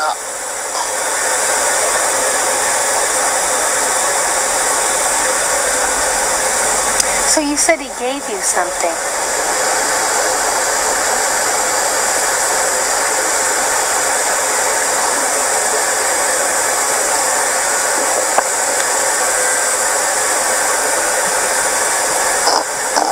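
A steady, loud rushing hiss like air blowing. About eight seconds in it dips briefly under a short, faint voice sound.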